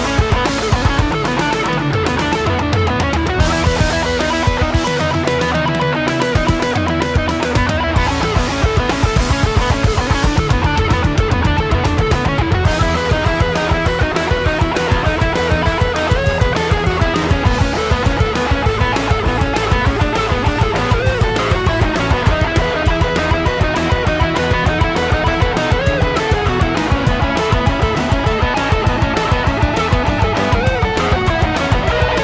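Heavy rock song playing: an electric guitar solo over drums and bass. It runs through bars in odd time signatures, then settles into a steady 4/4 groove partway through.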